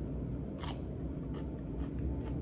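Crisp crunching of a raw white radish slice being bitten and chewed, a few short sharp crunches, the clearest about half a second in.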